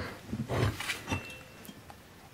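A softly spoken "well", then faint handling noise and a small click as a Secop BD35F refrigeration compressor is lifted and turned over in the hand.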